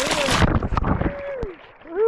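Water splashing hard as a noodler bursts up out of the lake holding a big flathead catfish, with a loud rush of spray at the start and then rougher sloshing as the fish thrashes for about a second before it quiets.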